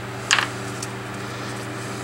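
Small rubber and metal parts of an air cylinder (seals, bushings, a washer) set down by hand on a paper-covered workbench: one short clack about a third of a second in, then a faint tick. A steady low hum runs underneath.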